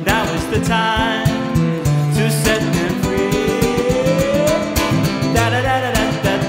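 Live acoustic song in an instrumental passage led by nylon-string acoustic guitar, strummed in a fast, steady rhythm over held notes. One tone slides slowly upward in pitch midway through.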